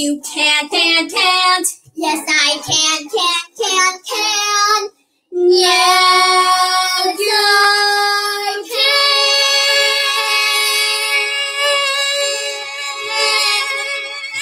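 Two girls singing a duet: quick back-and-forth sung lines, a brief break, two held notes, then a long final held note.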